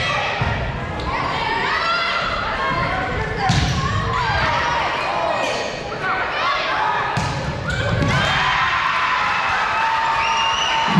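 Volleyball rally in a large gym: a few sharp smacks of the ball, seconds apart, over continuous shouting and calling from players and spectators.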